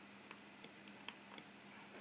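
Faint, sharp clicks of a computer mouse, about five in two seconds, over a low steady electrical hum.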